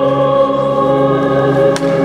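A choir sings a slow hymn in long, held chords during communion. A single brief click sounds near the end.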